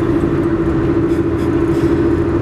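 Car cabin noise while driving on a highway: a steady drone of engine and road noise with a constant hum.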